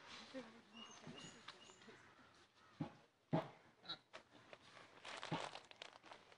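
Pigs grunting faintly, with a few footsteps knocking and crunching on a dirt path scattered with dry leaves.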